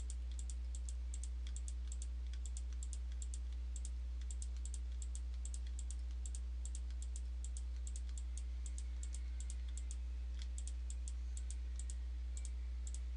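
Computer mouse buttons clicking repeatedly, several quick clicks a second and often in close press-and-release pairs, as the hair cards are brushed by clicking and dragging. A steady low electrical hum runs underneath.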